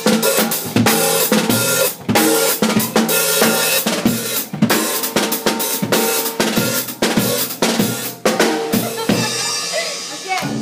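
A drum kit played fast and loud, with dense snare and bass drum hits and cymbals, a brief dip in the drumming about two seconds in.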